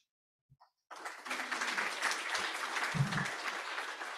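Audience applauding, starting about a second in, with a low thump about three seconds in.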